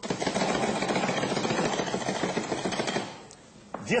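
Hand-operated nut grinder working rapidly through pine nuts: a fast, continuous grinding rattle for about three seconds that then stops.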